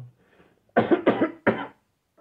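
A man coughing, three quick coughs in a row about three-quarters of a second in, in a pause between sung lines.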